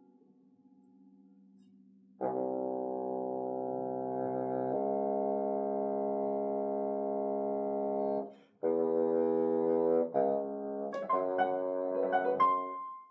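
Bassoon with piano. After about two seconds of near quiet, the bassoon enters with a long held low note, pauses briefly for breath, then plays a second sustained note and a run of shorter notes. Piano notes strike in near the end.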